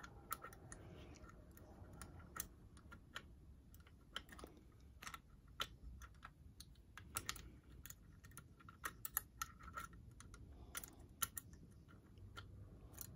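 Faint, irregular metallic clicks of a wire pick and homemade tension tool working the levers inside an old two-lever mortise sash lock.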